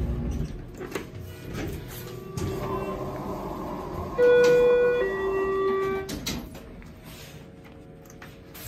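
Schindler hydraulic elevator reaching its floor: a steady hum of the moving car, then a two-note electronic chime, a higher note and then a lower one, each about a second long, followed by a few clicks.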